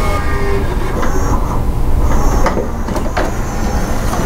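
Pioneer CLD-3390 LaserDisc player's motorized disc tray sliding out to open, a steady motor rumble with a few light mechanical clicks.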